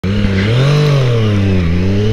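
Motorcycle engine running as the bike is ridden: its pitch rises to a peak just under a second in, then falls steadily as the revs drop.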